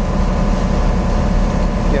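Steady low drone of a ship's engine running while the vessel is under way, with an even hiss of wind and sea over it.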